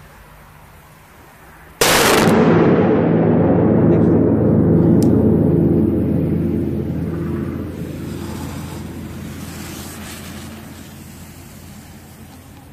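A single large firecracker goes off about two seconds in with one sharp bang, followed by a long booming reverberation in a tunnel that rings on for several seconds and slowly fades away.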